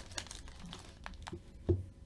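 Foil trading-card pack wrapper crinkling as it is torn open and handled, with a few light clicks and one sharper knock near the end.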